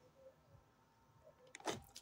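Near silence: faint room tone, with one short rushing noise near the end.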